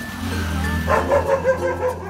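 Background music with a steady low bass; about a second in, a dog barks rapidly, about five short barks in under a second.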